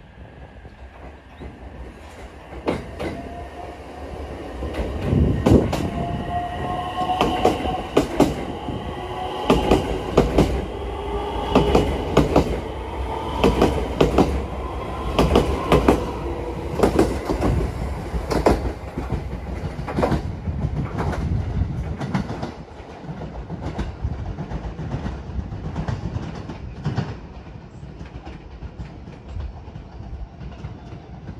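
Limited express electric train running past close by, its wheels clacking over the rail joints in a steady rhythm, with a whine that slides up and down. It is loudest in the middle and gets quieter after about 22 seconds.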